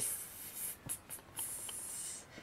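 Faint rustling of paper and packaging being handled, with a few light clicks about a second in.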